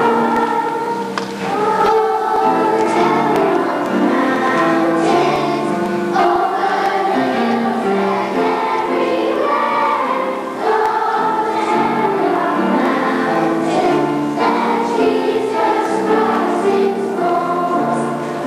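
Children's church choir singing together, a continuous line of sung notes moving from pitch to pitch.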